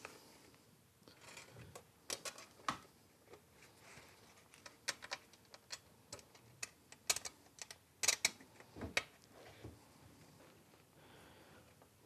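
Light, irregular clicks and taps of small steel screws being picked up and set into the holes of a thin copper scratchplate, the metal plate ticking as it is handled, with a brief louder cluster of clicks a few seconds from the end.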